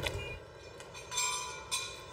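Construction-site machinery: a low rumble with a machine whine that sounds in two short spells, about a second in and again near the end.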